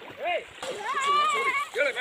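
Men's short shouts and yelps with one long held call in the middle, over the splashing of people swimming in river water.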